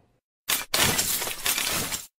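Glass-shattering sound effect: a sharp hit about half a second in, then the crash of breaking glass running on for over a second.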